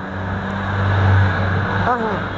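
A motor vehicle passing close by: a rushing noise that swells to a peak about a second in and then fades, over a steady low hum.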